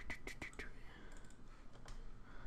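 Faint clicking at a computer: a quick run of about five clicks in the first half-second, and another single click near the end.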